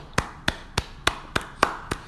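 Hand clapping, a slow steady run of sharp claps at about three a second.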